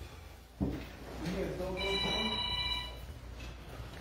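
Faint distant voices in a large room over a low rumble of phone handling, with a steady electronic ringing tone of several pitches lasting about a second in the middle.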